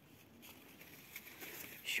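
Faint rustling and scratching of eggplant leaves and stems being handled, a little louder in the second half, with a spoken word starting at the very end.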